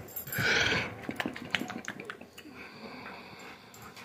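Raccoon eating a piece of food held in its paws: a short breathy hiss, then a run of small crunching clicks from chewing.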